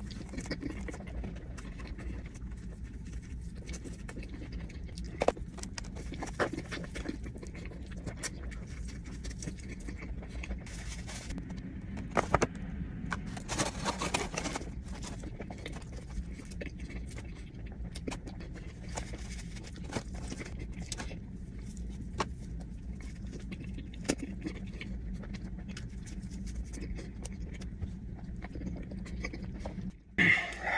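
Biting into and chewing crispy fried chicken sandwiches: scattered short crunches and wet clicks, busiest about twelve to fourteen seconds in, over a steady low hum.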